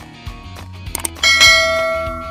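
Subscribe-animation sound effects: a couple of short mouse clicks, then a bell ding about a second in that rings out and fades, over background music.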